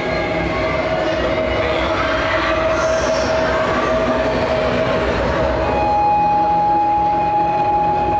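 Dark, ominous drone of suspense underscoring: a low rumble with a long held tone that gives way to a higher held tone about six seconds in.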